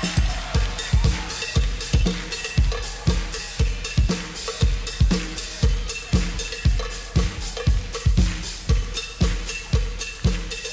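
Live drum kit and percussion groove: a steady bass drum about twice a second with snare and hi-hat, and a percussionist scraping a cheese grater as a scraper instrument.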